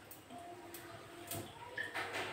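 Quiet pouring of cooking oil from a bottle into a pressure cooker, with a light tap partway through.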